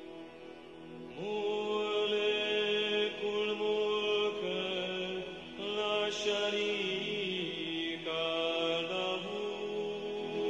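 Recorded meditative mantra chanting: a voice sings long held notes over a steady drone. The line slides in about a second in and pauses briefly twice.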